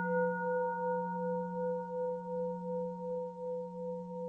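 A Buddhist bowl bell ringing on after a single strike: several steady bell tones hum together, the higher ones fading out, the whole ring slowly dying away with a gentle pulsing waver of about two beats a second.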